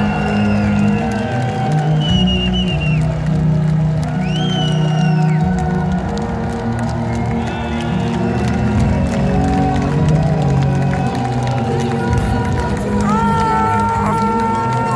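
A symphonic metal band playing loud live on an open-air festival stage, heard from within the audience, with the crowd cheering and shouting over the music.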